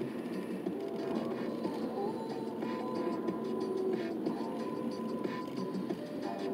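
Music playing from a car radio inside a moving car's cabin.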